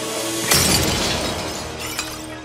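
A glass jar smashing on a wooden floor about half a second in, a sudden crash of shattering glass that fades over about a second, over background music with held notes.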